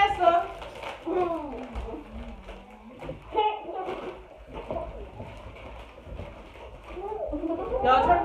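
Indistinct children's voices in a small room, talking off and on, quieter in the middle and louder again near the end.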